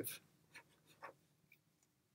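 Marker pen writing on paper: a few faint, short strokes, about half a second and one second in.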